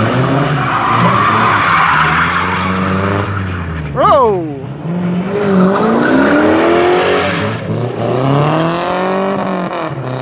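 Two drift cars, a Ford Mustang and a Nissan 240SX, sliding in tandem: the engines rev up and down repeatedly and the tires squeal. About four seconds in there is a brief loud squeal that falls in pitch.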